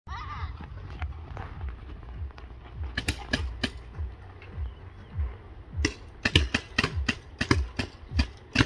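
Paintball markers firing in short strings of sharp pops: four quick shots about three seconds in, then a faster run of about eight shots from about six seconds on, over a low wind rumble on the microphone.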